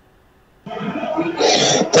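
After a brief near silence, a person's voice comes in through an online call, clearing the throat. Louder speech starts near the end.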